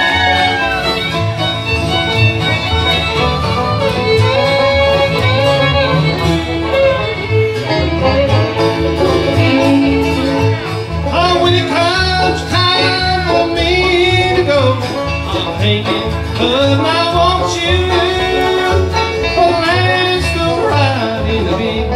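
Live bluegrass band playing an instrumental break: banjo picking over acoustic guitars and a steady upright bass pulse, with a lead line that slides in pitch.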